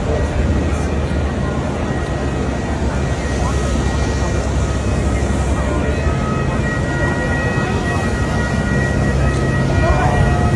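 Busy city-square street ambience: a steady hubbub of voices over traffic noise and a low rumble, with a faint steady tone that becomes clearer about two-thirds of the way through.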